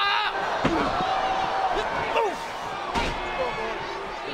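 Bodies slamming against a wrestling ring's canvas and ropes: a few sharp thuds, the clearest about a second in and near the three-second mark, over the voices of an arena crowd.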